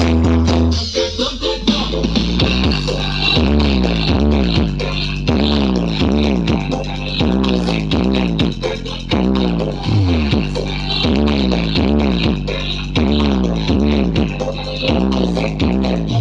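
Loud electronic dance music played through a large stacked outdoor sound system, with heavy bass and a repeated falling pitch sweep roughly once a second.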